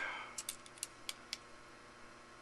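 Digital caliper's steel jaws and slide clicking lightly against a small metal cap as a measurement is taken: about six short, irregular taps in the first second and a half, then quiet handling.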